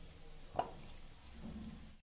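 Faint room noise with one light click about half a second in.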